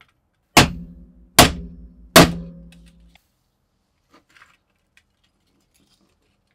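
A hammer striking a steel pin punch three times, about 0.8 s apart, to drive out a rusted fastener from an old steel kitchen scale body set on steel 1-2-3 blocks. Each blow is a sharp metallic clang that leaves a steady ringing tone, fading out about three seconds in, followed by faint small clicks of handling.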